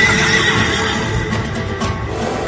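Dramatic ringtone music: a high note held and slowly fading over a low, pulsing accompaniment.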